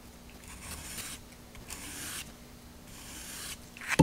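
Sandpaper on a sanding block rubbed along the tip of a wooden dowel in three slow strokes about a second apart, each a short scratchy rasp. The tip is being bevelled down toward a point.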